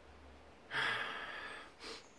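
A man drawing a breath in, lasting about a second and starting a little under a second in, then a short second breath near the end.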